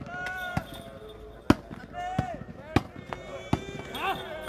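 A volleyball struck by hand during a rally: sharp slaps about once a second, four in all, the loudest about a second and a half in. Players shout calls between the hits.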